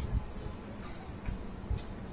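Several soft clicks and low knocks of two people eating with their hands at a table: fingers picking at fish and rice on plates, and chewing.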